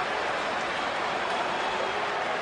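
Steady crowd noise from an ice-hockey arena crowd, an even wash of many voices with no single event standing out.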